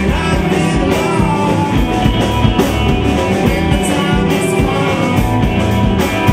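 Live rock band playing: electric guitars, bass guitar and drum kit keeping a steady beat, with a male lead vocalist singing.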